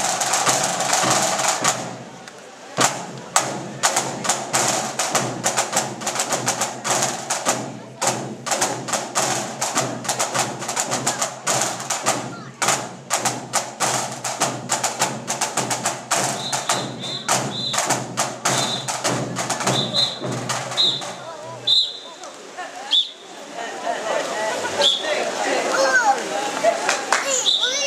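Scout marching drum band of snare drums, bass drum and drum kit playing a fast, rhythmic drum piece; the drumming stops a little after twenty seconds in, and audience voices follow near the end.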